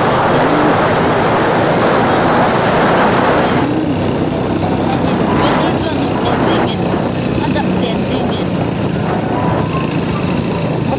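A motor vehicle running along a road, with loud wind rushing over the microphone. The rush is heaviest for the first three and a half seconds and then eases.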